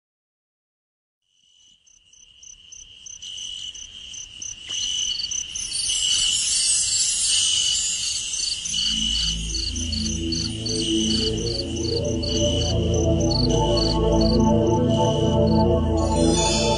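Insects chirping in a high, rapidly pulsing pattern, fading in after about a second and a half. About halfway in, slow ambient music with long sustained low tones comes in beneath the chirping.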